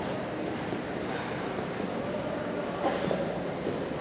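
Steady background rumble of a large indoor arena, with a short sharp knock about three seconds in.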